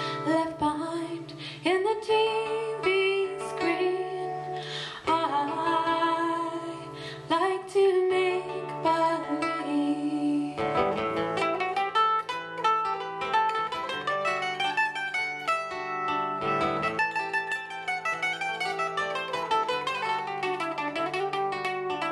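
Acoustic guitar and mandolin playing a folk song, with a woman singing over them for the first ten seconds or so. After that the singing stops and the mandolin plays fast picked runs that climb and fall.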